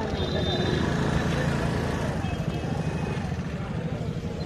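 Small motorcycle and scooter engines running at low speed, a steady pulsing rumble, with voices of people around.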